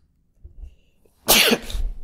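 A man's single loud burst of breath, like a sneeze, about a second and a half in, after a near-silent pause.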